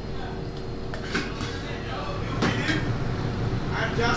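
Kitchen background: a steady hum under faint voices, with a few sharp knocks, two about a second in and two more past two seconds.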